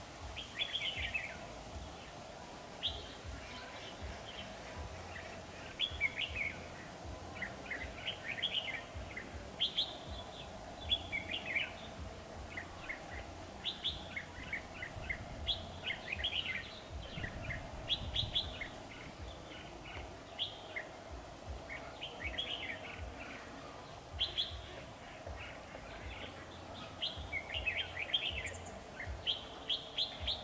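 Red-whiskered bulbuls singing short, chirpy warbling phrases, one every second or two, over a faint steady hum.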